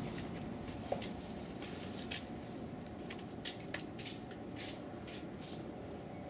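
About a dozen soft, irregular scuffing sounds over a quiet, steady background.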